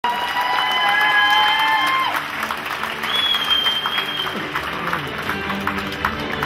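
Audience applauding and cheering, with a long high cheer that drops off sharply about two seconds in, then a shrill high whistle a second later.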